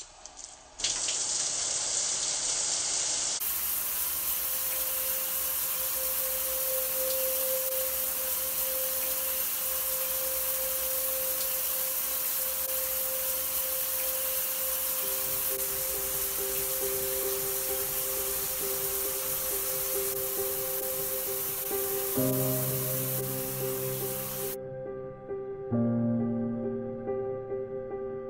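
Shower running: a steady hiss of water spray that begins about a second in and stops suddenly about a second and a half before the end. Soft background music with long held notes comes in underneath from about five seconds in and carries on alone after the water stops.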